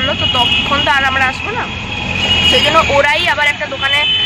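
A woman speaking, over a steady low rumble of a car engine and street traffic heard from inside the car.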